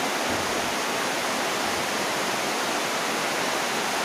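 A steady, even hiss of background noise, with no distinct strokes, knocks or tones standing out.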